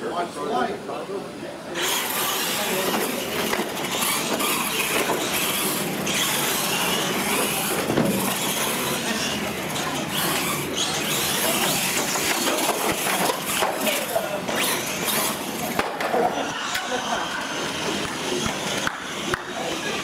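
Radio-controlled pro mod monster trucks racing across a concrete floor, their running noise starting abruptly about two seconds in and easing off near the end, with people talking in the background.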